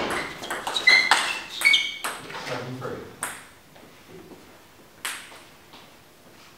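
Table tennis ball in a fast rally, each stroke a sharp ping as it is struck by the bats and bounces on the table, packed into the first two seconds. Two more single knocks of the ball come later.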